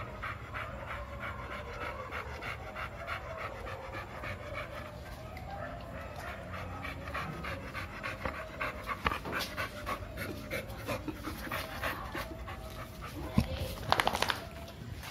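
American Bully dog panting quickly and rhythmically, with a single thump near the end.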